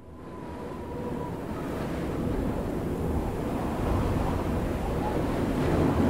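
An even, rushing noise fades in from silence and swells steadily louder through the quiet opening of a song, with a faint held tone near the start.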